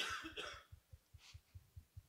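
A person coughs once, briefly, at the start, then the room is nearly quiet.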